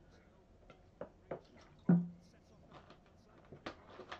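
Several sharp clicks and knocks from something handled close to the microphone, the loudest just under two seconds in with a brief low hum after it, over faint speech.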